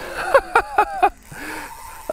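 A man laughing in a quick run of about five short bursts, excited, then a softer breath or sound and a faint thin steady tone near the end.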